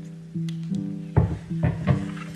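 Lo-fi background music with plucked notes; about a second in, three knocks and clatters as a wooden cutting board is set down in a stainless steel sink.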